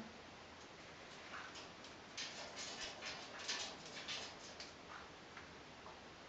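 Faint, scattered light clicks and taps, several a second between about two and five seconds in.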